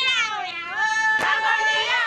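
Women's voices singing high, drawn-out calls that glide up and down in pitch for a dance, with a single sharp knock or clap about a second in.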